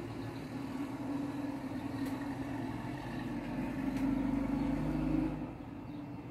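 Motor vehicle engine noise from the street, a steady low hum that grows louder about four seconds in and drops off sharply a little before the end.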